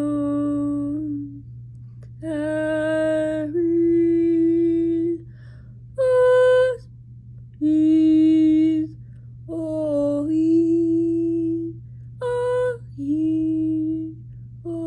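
A woman's voice singing unaccompanied, a string of about eight separate held notes on open vowels, each lasting about a second with short breaks between, mostly on one pitch with a few jumps higher. A steady low hum runs underneath.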